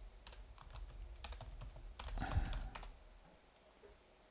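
Typing on a computer keyboard: a run of light key clicks that stops about three seconds in.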